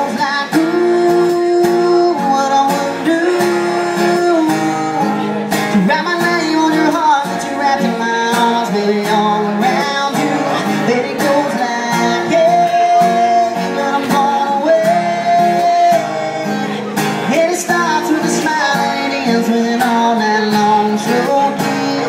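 Acoustic guitar strummed steadily, with a man's voice singing a melody over it in long held notes.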